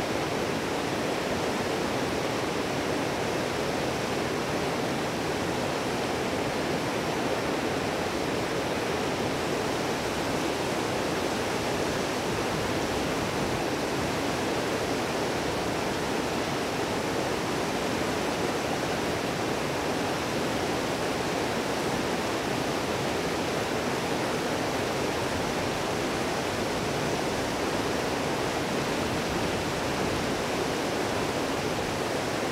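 Fast mountain river rushing over boulders: a steady, unbroken white-water noise.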